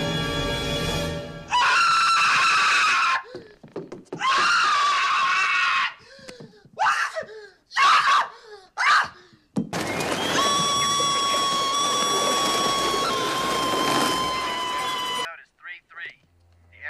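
A man screaming in terror: several high, strained screams in bursts, then one long, high scream held for about five seconds that dips slightly in pitch before cutting off.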